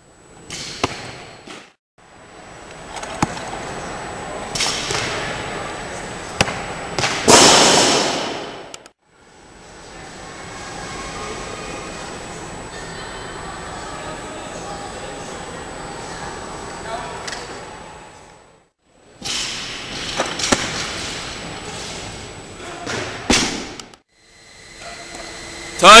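Weightlifting training-hall sound in several short stretches broken by silent cuts: voices in the background and sharp knocks of barbells. There is a louder noisy crash about seven seconds in.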